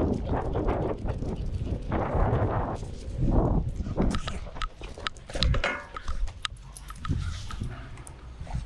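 Longboard wheels rumbling over rough asphalt, then a clatter of sharp knocks about halfway through as the board comes out from under the rider and tips over at the curb.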